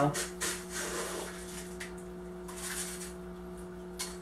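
Gravelly bonsai soil being scooped from a bowl and poured into a bonsai pot: short gritty rustles and scrapes in the first second or so and again near the middle, over a steady low electrical hum.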